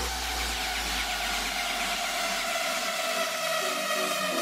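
Progressive house DJ mix in a beatless breakdown: the kick drum has dropped out, leaving held synth chords over a hiss-like wash. The deep bass fades away over the second half.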